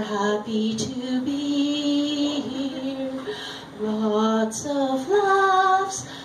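A woman singing a light comic song into a microphone, holding each note for about a second as the tune steps up and back down, then rising near the end.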